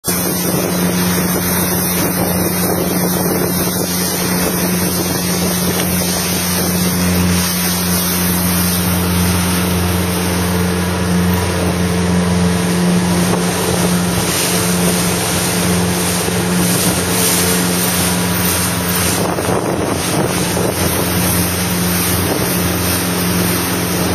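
Motorboat engine running steadily, with wind on the microphone and water noise over it.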